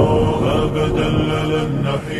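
Slowed, reverberant a cappella nasheed: male voices holding long chanted notes without words between verses.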